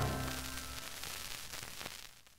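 The final orchestral chord on an old Decca record rings and dies away, leaving record surface hiss that fades out near the end.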